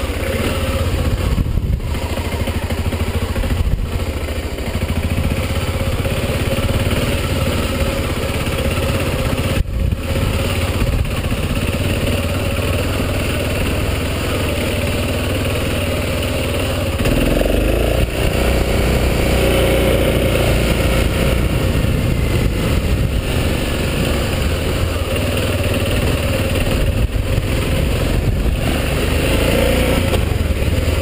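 BMW F650GS motorcycle engine running steadily while riding a rough dirt track, heard from an on-bike camera. A little past halfway the engine note shifts and gets louder and fuller.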